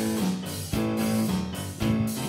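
Live band playing an instrumental passage: held keyboard chords and guitar, with drum hits about a second apart.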